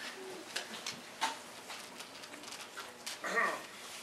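A few light knocks and taps, then a short vocal sound from a person about three seconds in.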